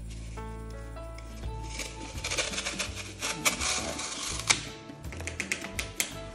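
A knife sawing through a block of dry floral foam: a quick run of short, scratchy strokes that starts about a second and a half in and stops near the end, over background music.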